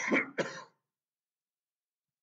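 A man clearing his throat with a cough: two short, harsh bursts within the first second.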